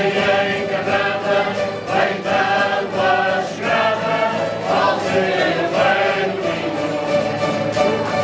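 A Portuguese folk group of men singing together in chorus, accompanied by strummed cavaquinhos and acoustic guitars.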